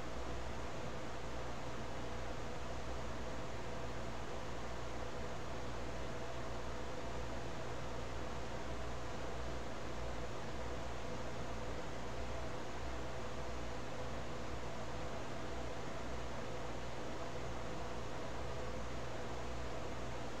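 Steady hiss of a recording's background noise with a faint constant hum underneath: room tone, no distinct event.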